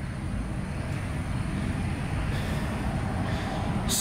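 A steady, low rumble of a vehicle engine running, with an even outdoor noise haze over it.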